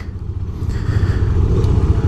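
A 2018 KTM Duke 390's single-cylinder engine idling on its stock exhaust: a low, steady rumble, very tame.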